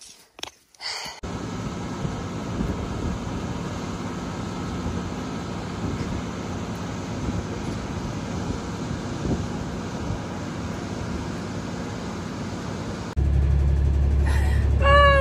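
Tractor-driven feed mixer wagon working hay, a steady machine running noise with an even low engine hum. Near the end it cuts abruptly to a louder, deeper engine hum.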